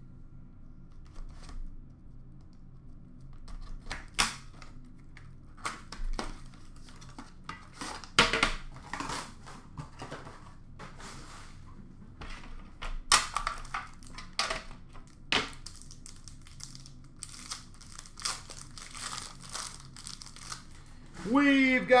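Packaging wrapper being torn and crumpled while a hockey card box is opened, with scattered sharp clicks and knocks as the tin inside is handled and cards are taken out.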